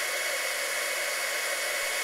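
Craft heat embossing tool blowing steadily: a rush of hot air with a thin high whine, heating a salt, flour and water paste so that it dries out and puffs up.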